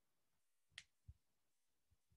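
Near silence in a room, broken by a single sharp click a little before halfway, followed by a soft low thump.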